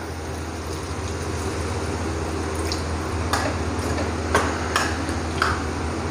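Water poured into a steel kadhai of frying vegetables, then a steel ladle stirring them, with a few sharp clinks of the ladle against the pan in the second half over a steady background hiss.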